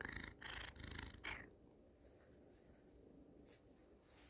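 Black domestic cat purring close to the phone, with several short rustling bursts in the first second and a half as its head rubs against the phone, then fainter.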